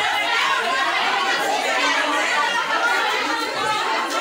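Crowd of students talking at once in a packed room: steady, overlapping chatter with no single voice standing out.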